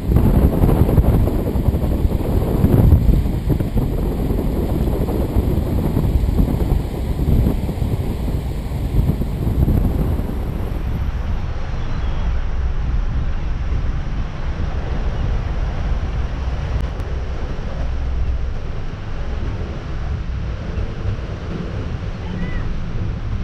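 Wind buffeting the microphone: a steady low rumble with no horn. About halfway through, the high hiss drops out suddenly and the rumble becomes a softer, even rush.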